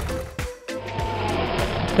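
Cartoon background music with a steady rushing noise and low hum starting about half a second in.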